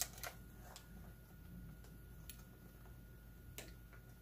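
Quiet room tone with a handful of faint, sharp clicks at irregular moments, from light handling of a small glass votive holder.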